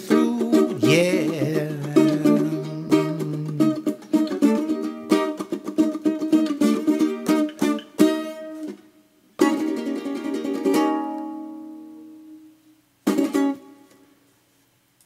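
A man's voice holds the last sung note over a strummed ukulele for the first few seconds, then the ukulele plays on alone in quick strums. A chord struck about nine and a half seconds in is left ringing and fades away, and one last short chord comes just before the end.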